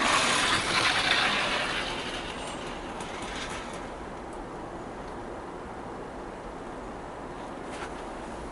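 Hornby OO gauge HAA hopper wagon with metal wheels rolling freely along model railway track after a hand push. It is louder for the first couple of seconds, then fainter and steady as it rolls away.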